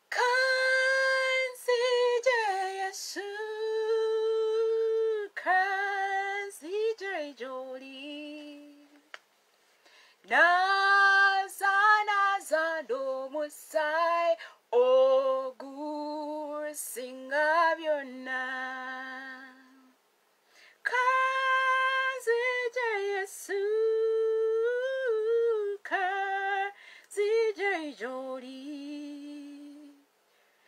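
A woman singing solo, unaccompanied, in three long phrases with short breaks about ten and twenty seconds in.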